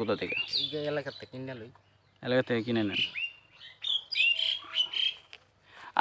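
A bird chirping in a string of short, high calls with quick pitch glides, heard mostly in the second half between bits of a man's speech.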